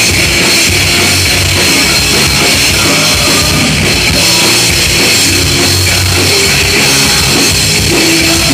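Punk rock band playing live, with distorted electric guitar, bass guitar and drum kit, loud and steady throughout.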